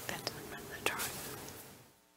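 Quiet council-chamber room tone with faint whispering and a few small clicks. The sound drops out to dead silence near the end.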